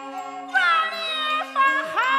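Huayin Laoqiang ensemble music: a bowed Chinese fiddle plays sliding, wailing phrases that come in louder about half a second in, over steady lower held notes.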